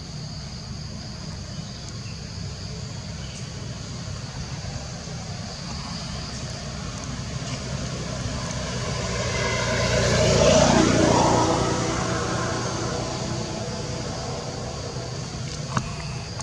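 A motor vehicle passing by, building over a few seconds, loudest a little past the middle, then fading away, over a steady background drone of insects.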